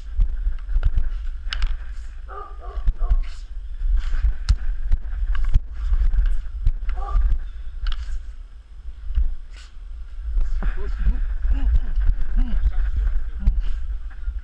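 Wooden training sticks clacking against each other at irregular intervals in a partner stick-fighting drill, over a steady low rumble.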